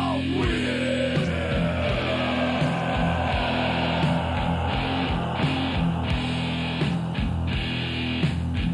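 Crossover thrash music: an instrumental stretch of distorted electric guitar riffing over bass and drums, with a falling glide in pitch near the start.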